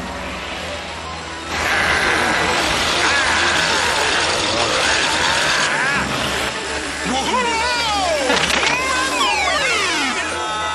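Cartoon soundtrack of music and sound effects: a loud rushing noise comes in about one and a half seconds in, with wavering pitched sounds over it and a falling whistle near the end.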